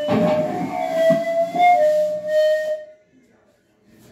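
Electric guitar holding a few sustained single notes with slight bends after the drums have stopped, dying away about three seconds in, followed by near silence.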